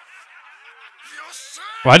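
Speech: faint voices from the anime episode playing underneath, then a man's voice starts loudly near the end.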